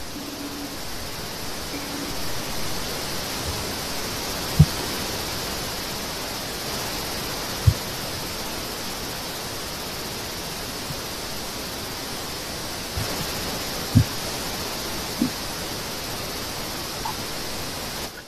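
Steady hiss of background noise from an open microphone on a video call, with three short low thumps, the first about four seconds in.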